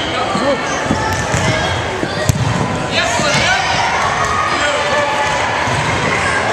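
Volleyball being struck during a rally in an echoing gym, with one sharp hit of the ball a little over two seconds in, amid voices.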